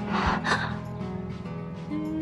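A quick, breathy gasp in the first half-second, over background music of held notes.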